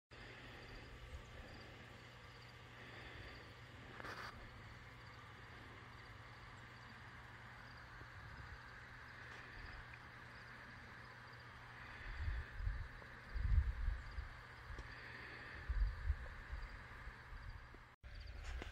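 Faint outdoor ambience with a quiet steady background hiss. About two-thirds of the way through, a few low rumbles and bumps hit the microphone.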